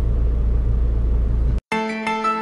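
Semi truck's diesel engine idling steadily while parked, a low rumble heard inside the cab. It cuts off abruptly about one and a half seconds in, and soft piano music begins.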